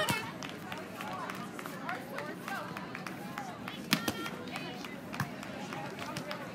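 Background voices and chatter around outdoor beach volleyball courts, with a few sharp slaps: the first, right at the start, as two teammates slap hands, and the loudest about four seconds in.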